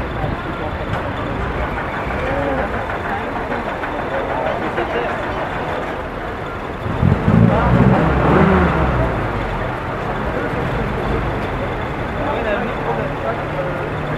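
A military vehicle's engine passes close by, coming in suddenly about seven seconds in and loudest for about two seconds before fading, over the chatter of a street crowd. A low, steady engine hum sets in near the end.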